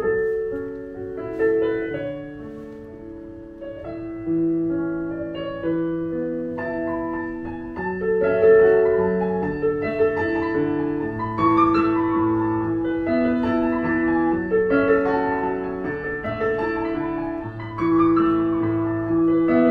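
Digital piano played slowly, with held notes and chords ringing on; it dips quieter a few seconds in, then grows louder from about the middle.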